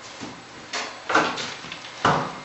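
Steel plastering knife scraping across dry Venetian plaster to burnish it to a gloss: a short stroke about three-quarters of a second in, then a longer, louder stroke a little after a second in.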